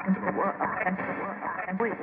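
Sliced sample of a radio being tuned across stations, played back in Ableton Simpler: short chopped fragments of broadcast speech and music with a thin radio sound, reordered slice by slice into a new rhythmic sequence.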